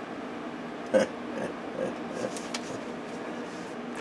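A short grunt from a man about a second in, followed by a few faint clicks and handling sounds, over a steady machine hum.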